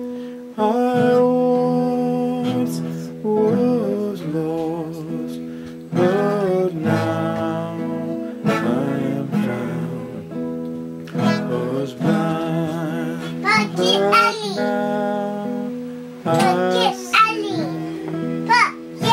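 Nylon-string classical guitar strummed in slow chords, a new chord struck about every two and a half seconds and left to ring, with a voice singing along.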